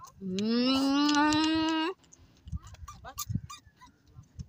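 One long, loud call that rises in pitch at the start, holds steady for about a second and a half, then cuts off suddenly.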